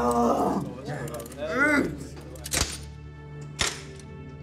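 A man's drawn-out wordless yells, once at the start and again about a second and a half in, over a steady background music bed, followed by two sharp knocks about a second apart.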